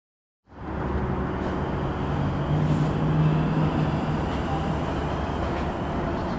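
Steady vehicle or traffic noise with a low hum, like an outdoor field recording, cutting in suddenly about half a second in after silence.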